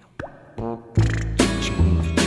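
Music with strummed guitar chords over a bass line comes in loudly about halfway through. Just before it come a short sound falling in pitch and a brief pitched note.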